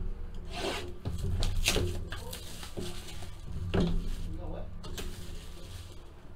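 Hands rustling and rubbing the plastic and paper wrapping of a box of trading cards as it is opened and the cards slid out, in a string of short scraping strokes over a steady low hum.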